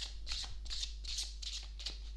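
A deck of large reading cards being overhand-shuffled, cards slid and dropped from hand to hand in a quick run of papery rustles, about two to three a second.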